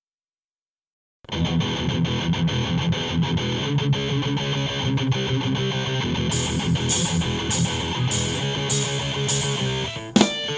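Hardcore punk band's demo recording: after a second of silence, an electric guitar riff with bass and drums starts abruptly. Bright cymbal strokes join just after six seconds in, about twice a second.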